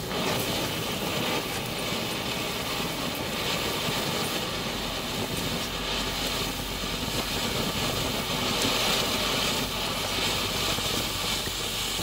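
A 200-gram ground fountain firework burning, a steady rushing hiss of sparks that holds throughout.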